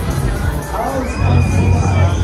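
Riders on a Mondial Top Scan thrill ride screaming and shouting over loud fairground ride music with a heavy bass.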